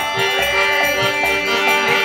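Kirtan music without singing: a harmonium holding steady chords over a mridanga drum beating a steady rhythm with deep bass strokes about twice a second, and hand cymbals jingling along with the beat.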